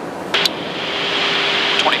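Aircrew radio or interphone channel keyed open: a sharp click about a third of a second in, then a steady open-mic hiss with a faint hum over the aircraft's background noise. A voice starts a call near the end.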